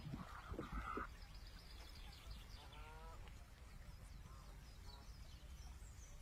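Quiet outdoor ambience with low background rumble and a faint distant animal call about three seconds in.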